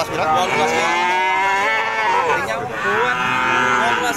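Cattle mooing: two long, drawn-out moos, one after the other.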